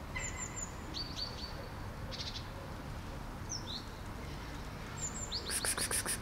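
Small birds chirping: short, high, falling notes in quick groups of two or three, then a rapid rattling chatter starting near the end.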